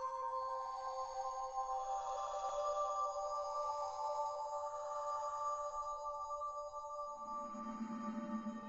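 Ambient synthesizer music: several long held tones that slowly shift in pitch, with no beat. A lower tone comes in about seven seconds in.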